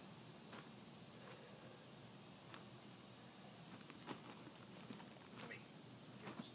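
Near silence, with a few faint scuffs and knocks from someone moving about in the dirt and handling bags of rock. The clearest knock comes about four seconds in.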